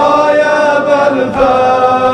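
Male voices chanting long held notes of a mourning elegy (mərsiyə), without clear words, moving to a new pitch partway through.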